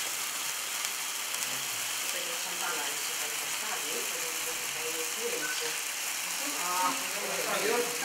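Three fountain sparklers on a birthday cake burning with a steady, even hissing crackle. Faint voices murmur underneath near the end.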